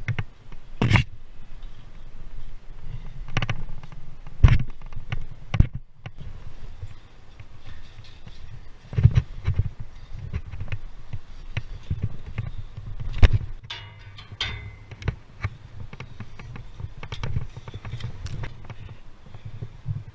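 Wind buffeting the microphone as a low rumble, broken by sharp irregular knocks and clanks as the climber's gear and hands strike the steel ladder.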